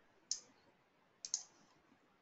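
Three sharp clicks at a computer: one about a third of a second in, then a quick pair a little after a second in.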